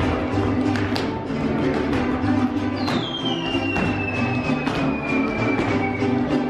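Mexican mariachi-style music with violins and guitar playing for a folklórico dance, with sharp taps that fit the dancers' zapateado footwork. A long high note slides slowly downward through the second half.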